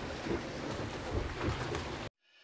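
Steady rushing noise of water and wind around the hull of a Mini 6.50 racing sailboat under way, heard from inside its small cabin, with a few soft low bumps.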